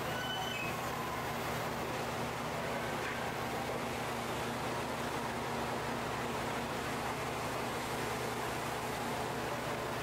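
Steady background hiss with a low hum and no distinct events, with a few faint brief high chirps in the first second.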